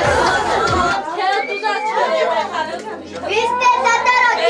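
Several women and children talking and calling out over one another in a room. Loud party music with a bass line plays at first and cuts off about a second in.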